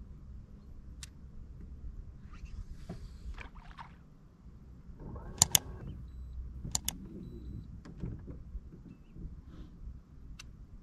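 Two pairs of sharp mouse clicks about halfway through, the loudest sounds here, over a low steady rumble and a few light knocks.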